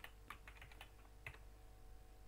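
Faint typing on a computer keyboard: a string of irregular, quiet key clicks.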